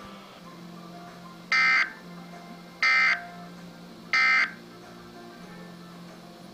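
Midland weather radio's speaker sounding three short, harsh digital data bursts about 1.3 seconds apart over a low steady hum: the SAME end-of-message tones that close a broadcast weather alert.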